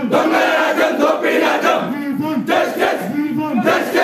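Crowd of young men loudly chanting slogans in unison, the same short rising-and-falling phrase repeated over and over.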